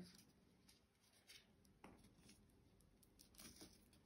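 Near silence, with a few faint rustles and ticks from twisted cotton cord being threaded through a paper gift tag.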